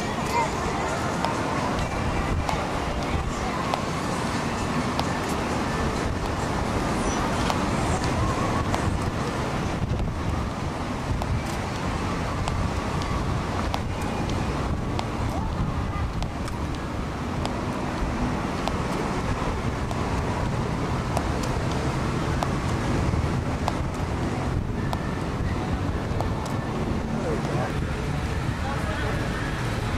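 Steady wind on the microphone, a continuous low rush, with road traffic and indistinct voices underneath.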